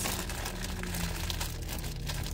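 Clear plastic bag crinkling faintly as it is handled, over the steady low hum of an idling car engine.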